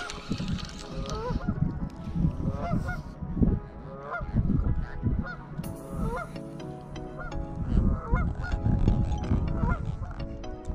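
Geese honking over and over, short calls about once or twice a second, with wind rumbling on the microphone.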